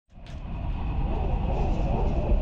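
A deep rumbling noise with a hiss over it, fading in from silence at the very start and building up steadily.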